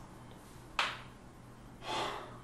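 A person's breathing: a short, sharp breath about a second in, then a softer, drawn-out breath near the end.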